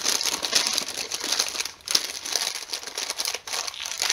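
A white paper bag crinkling and crumpling as it is handled and scrunched up in the hands, with two brief pauses.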